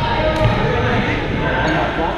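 Badminton play in a large, echoing gym hall: a couple of sharp racket-on-shuttlecock hits, about half a second in and near the end, over the steady chatter of players' voices.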